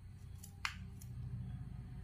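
Faint handling of a watermelon slice by fingers over a steel plate, with one sharp click about two-thirds of a second in and a fainter one at about a second, over a low steady hum.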